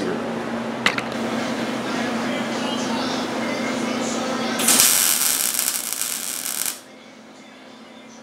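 MIG welder laying a short tack weld on the seam of a sheet-metal cab corner patch panel: a loud hiss lasting about two seconds, starting a little past halfway. Before it, a steady low hum with a click about a second in.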